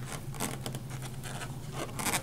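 Inflated rubber balloon being stretched and rubbed by fingers as its neck is forced through the hole in a CD: a few short scratchy rubbing sounds, with a steady low hum underneath.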